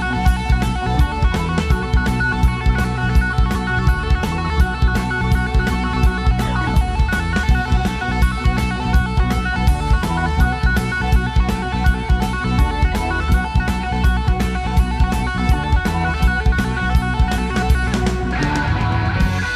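Rock band playing an instrumental passage live: Les Paul-style electric guitar over keyboard and bass, with a steady drum-kit beat.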